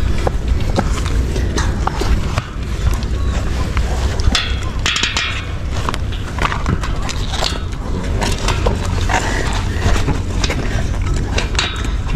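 Handling of a bicycle tyre and inner tube: irregular rubbing, scraping and small clicks of rubber against the rim as the tube is tucked into the tyre, over a steady low rumble.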